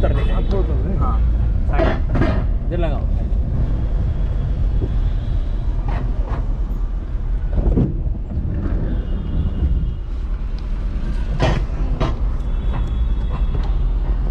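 Steady low engine and road rumble heard from inside a moving car's cabin in city traffic, with voices in the background.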